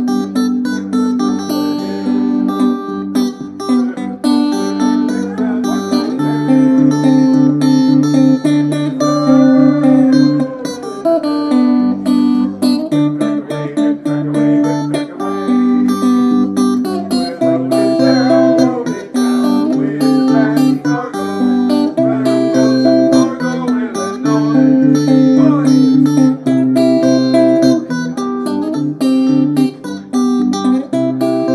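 Solo electric guitar played fingerstyle: a steady bass note about twice a second under a picked melody.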